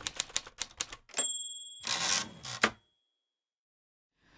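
Manual typewriter sound effect: about ten rapid key strikes, then the bell rings a high ding about a second in. A longer sliding sweep of the carriage return follows, and the sound stops before the three-second mark.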